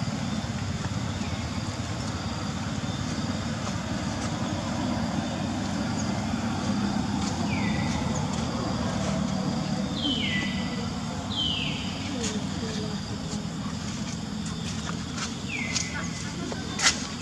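Outdoor ambience: a steady low rumble with indistinct voices in it, and every few seconds a short high chirp that slides downward in pitch.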